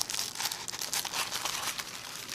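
Tissue paper crinkling and tearing as a small wrapped gift is unwrapped by hand: a quick, continuous run of small crackles.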